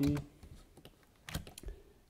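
Computer keyboard keys clicking: a few quick keystrokes about one and a half seconds in, after the end of a spoken word.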